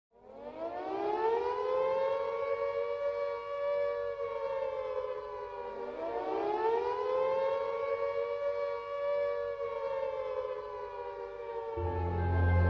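Air-raid siren wailing in two long cycles. Each cycle rises quickly and then slowly falls away, and the second begins about six seconds in.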